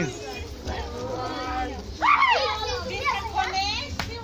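Several people's voices, children among them, calling out and chattering at once, getting louder about halfway through.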